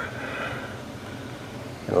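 Steady low hum of a running heating and air-conditioning unit, with the tail of a drawn-out spoken word at the start.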